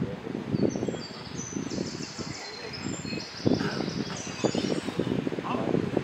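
Indistinct voices of people talking, with high birdsong in held, stepping notes from about one to four and a half seconds in.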